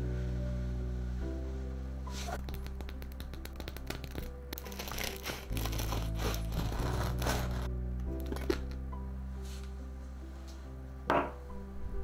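Background music, with a serrated bread knife sawing through the crisp crust of a freshly baked loaf of cottage cheese bread: a dense run of rapid scratchy clicks between about two and eight seconds in.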